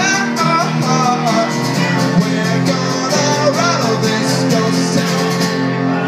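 A live song played on an acoustic guitar and an electric keyboard, with a man singing.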